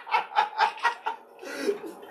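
Men laughing hard, in quick pulses that die away about a second in, leaving quieter chuckling.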